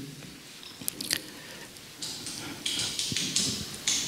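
A quiet pause picked up by a handheld microphone: a faint click about a second in, then soft breathy, rustling noises from about two seconds on. The video clip that was meant to play has no sound.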